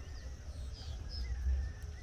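Outdoor farm ambience: a low, uneven rumble on the microphone with a few faint, short, high bird chirps about a second in.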